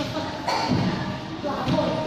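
Dull thumps about half a second in and again near the end, over the voices of children and adults in a large room.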